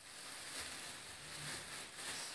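A thin plastic bag rustling steadily as a cat moves around inside it.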